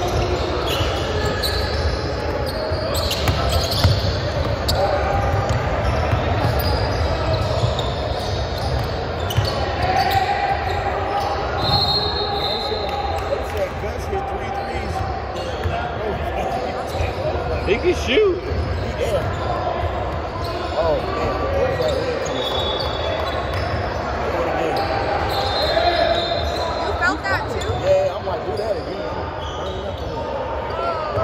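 Basketball game in a large gym: the ball bouncing on the hardwood court amid the echoing chatter of players and spectators, with a few short sneaker squeaks.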